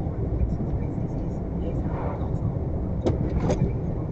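Steady low rumble of a lorry's engine and tyres on the road, heard from inside the cab, with two sharp clicks about three seconds in.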